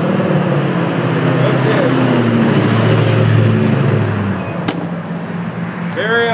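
Motor vehicle passing on the street: engine and tyre noise swells to a peak a little past the middle, then fades, with a faint falling whine. A single sharp click comes near the end.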